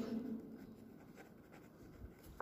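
Ballpoint pen writing on notebook paper, faint.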